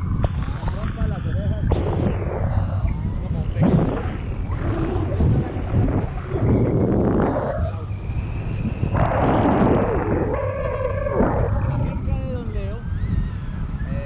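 Wind buffeting a camera microphone held out on a pole in flight under a tandem paraglider: a loud, steady low rumble.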